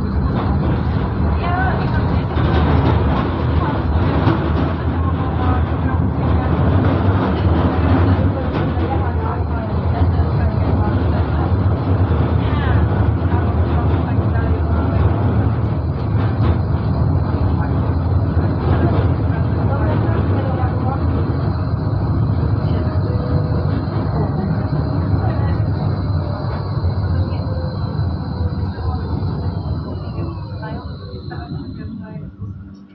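Moderus Gamma LF 03 AC low-floor tram running along its track, heard from inside the driver's cab: a steady running rumble and rail noise, with a high electric whine that falls in pitch near the end as the tram slows.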